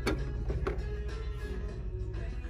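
Background music with a steady low bass, with a couple of light clicks from handling.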